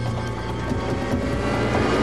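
Opening-title theme music for a TV crime documentary: synthesizer tones held steady, with a rushing swell building near the end.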